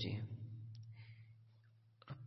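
A pause in a man's speech: a steady low hum from the recording with a single faint click, fading away until the sound cuts off suddenly at the end.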